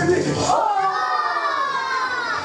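A long, high, cat-like meow or wail, drawn out and falling slowly in pitch, beginning about half a second in; the dance music's bass drops away beneath it.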